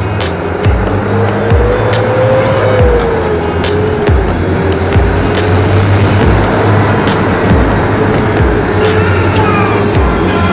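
Road and engine noise of slow city traffic beside a bus, heard from a moving motorcycle, with a steady low hum and a tone that rises slightly, falls, then holds. Background music with a beat plays over it.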